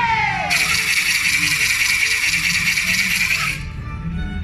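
A long, shrill whistle blast of about three seconds, starting and stopping sharply, over quieter dance music.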